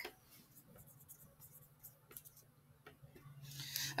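Faint strokes of a dry-erase marker writing on a small whiteboard: a few scattered light ticks, then steadier scratching near the end, over a faint low hum.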